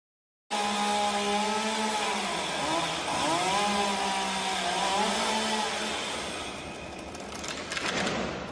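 Chainsaw engine running as a climber cuts high in a tree, starting about half a second in; its pitch sags and recovers twice as the chain bites into the wood, then it eases off, with a few sharp cracks near the end.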